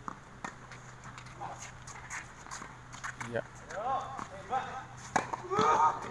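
Tennis ball being hit back and forth in a doubles rally after a second serve: irregular sharp pocks of ball on racket and court, spaced roughly half a second to a second apart, with players' voices calling out in the last two seconds.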